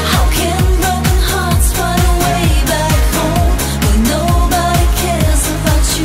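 Euro-disco pop song with a steady dance beat, about two beats a second, under a sung melody.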